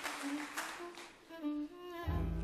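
A violin playing soft held notes, stepping slightly in pitch, with a few higher notes coming in toward the end.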